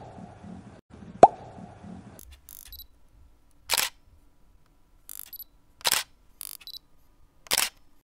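Sound effects of an animated outro. Two quick rising pops come in the first second or so, then three short bursts of noise about two seconds apart, with small clicks in between.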